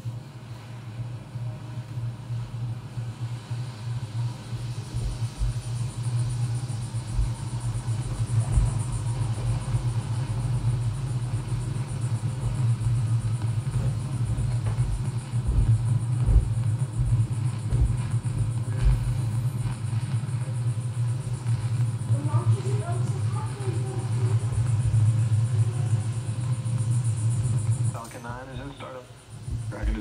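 A steady low rumble with a hiss over it, playing from the launch livestream on a computer. It cuts off suddenly about two seconds before the end, where a voice comes in.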